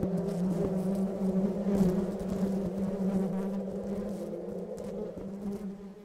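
A bee buzzing close to the microphone in a steady drone, its pitch holding level.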